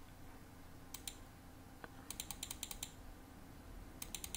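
Faint clicking of a computer keyboard and mouse. There is a pair of clicks about a second in, then a quick run of about eight clicks shortly after the middle.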